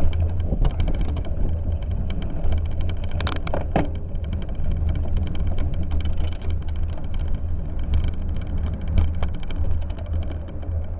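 Bicycle riding over a snowy road, picked up by a handlebar-mounted camera: a steady low rumble from the ride, with scattered rattles and clicks and a brief burst of sharper rattling about three seconds in.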